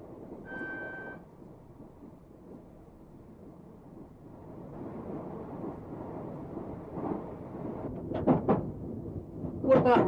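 Low, steady running rumble of a train heard from its cab, growing louder from about four seconds in. A short electronic tone sounds about half a second in, and a man's voice comes in near the end.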